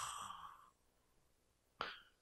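A man's breathy exhale into a close microphone, fading out about half a second in, followed by near silence and a short quick intake of breath just before the end.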